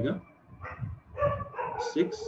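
A word of speech ends at the start, then a pitched, voice-like sound begins about a second in and holds a steady pitch past the end.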